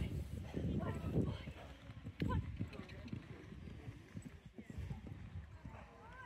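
Horse's hooves thudding on a sand arena surface at a canter, close by and loudest in the first couple of seconds, with a heavier knock about two seconds in, then fading as the horse moves away.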